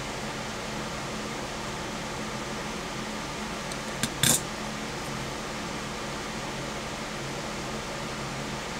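Steady fan-like hum of the room at the workbench. About four seconds in comes a faint click, then a short clack as a metal tool is handled and set down on the bench.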